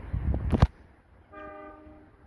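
Wind rumbling on the microphone, ending with a sharp knock just over half a second in. Then a distant train horn sounds one short note, about half a second long.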